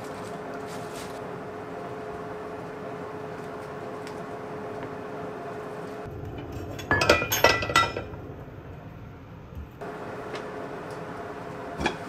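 Dishes clinking against each other and the counter: a quick cluster of sharp, ringing clinks lasting about a second, a little past the middle. Before and after it there is a steady kitchen hum, and a light click comes near the end.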